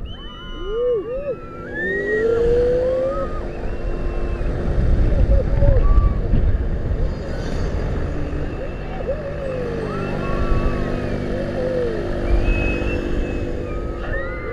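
Wind rushing and buffeting over the microphone of a rider's onboard camera as a Mondial Turbine gondola swings and turns through the air. Riders' voices cry out several times in short rising and falling glides, over a steady low hum.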